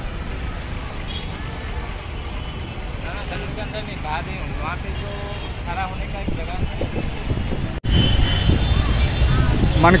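Outdoor city street ambience: a steady low traffic rumble with faint voices of people around, growing louder after a sudden cut near the end.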